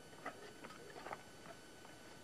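Faint footsteps on dry, stony ground: a few light, irregular clicks.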